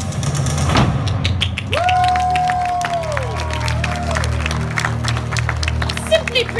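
Recorded show music ending on a sustained low chord, with a hit under a second in, as the audience breaks into scattered clapping. About two seconds in, someone in the crowd gives a long high whoop that holds and then falls away, followed by a shorter one.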